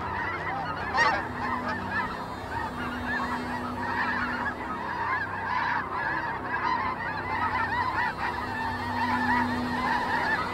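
A dense flock of birds calling continuously, many short overlapping calls at once, over a low steady hum, with one sharper, louder call about a second in.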